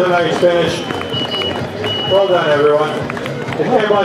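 Voices talking and calling out, with a faint, steady high tone for a couple of seconds in the middle.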